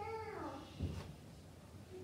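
A man's drawn-out exclamation of "oh", high-pitched and sliding down over about half a second, then quiet room tone with a faint knock near the middle.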